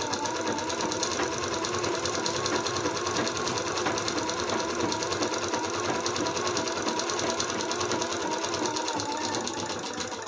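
Usha sewing machine running steadily, its needle stitching a fast, even rhythm through cotton blouse fabric as a line of topstitching goes along a seam's edge.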